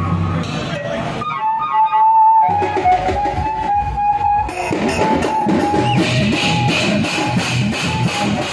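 Loud amplified pad band music: drum sounds beaten out with sticks on an electronic drum pad, under a held melodic lead line. The drums drop out for about a second near the start, leaving the melody alone, then come back in and build to a dense, fast beat.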